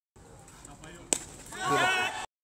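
A single sharp knock about a second in, followed by a raised voice calling out with rising and falling pitch.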